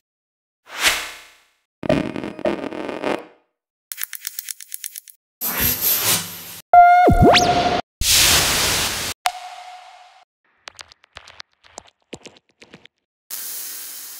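Electronic effects one-shots from a techno and house sample pack, previewed one after another. Each is a short, separate sound with a gap before the next: noise swishes, a run of quick clicks, a pitched zap that dives and climbs in pitch, loud noise bursts, a short steady blip, and then scattered ticks near the end.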